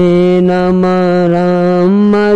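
A single voice holds one long, steady sung note in a Bengali Sufi devotional song (sama), then steps up in pitch near the end.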